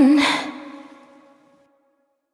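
End of a pop duet: the singer's last note trails off in a breathy sigh while the remaining backing tones fade out within about a second and a half.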